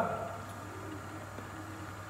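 Quiet pause with a steady low hum and no distinct events.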